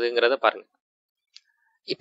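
A man speaking for about half a second, then a pause with one faint computer mouse click a little past halfway through.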